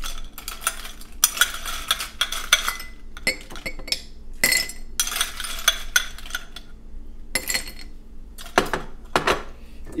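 Ice cubes scooped with a metal ice scoop and dropped into a tall glass, clattering and clinking in several separate bursts, one scoopful after another.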